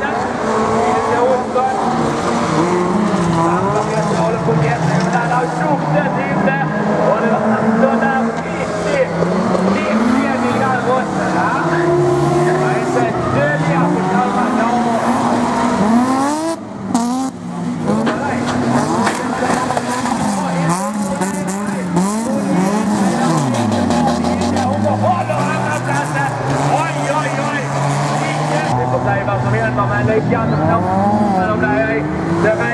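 Several folkrace cars racing on a dirt track, their engines revving up and down as they accelerate and lift off, several engine notes overlapping. The sound drops away briefly about two-thirds of the way through.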